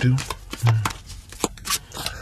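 Tarot cards being handled: a few sharp clicks and a short rustle near the end.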